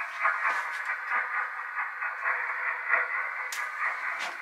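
Recorded underwater sonar audio playing from a sonar-room exhibit's loudspeaker: a thin, crackly hiss full of quick clicks and chirps, of the kind the sonar operators listened to, which is probably what it sounded like underwater.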